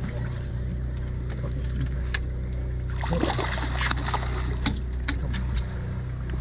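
A boat's engine running steadily with a low, even hum, while an angler fights a fish over the rail; short clicks and knocks come through at intervals.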